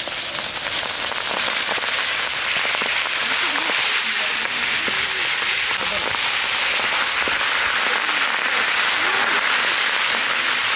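Hot oil sizzling and crackling with many quick pops as two large carp deep-fry on a wide flat iron pan. The sizzle grows louder and brighter about two seconds in and stays that way.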